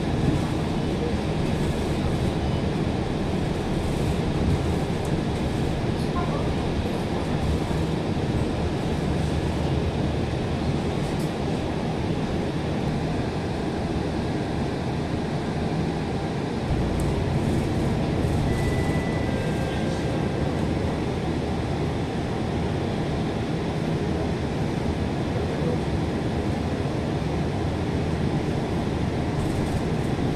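Steady low engine and road rumble heard from inside a moving double-decker bus, with a short faint high beep a little past halfway.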